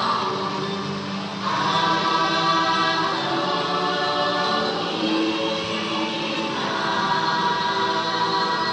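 Ride soundtrack music with a choir singing long held notes, swelling about a second and a half in.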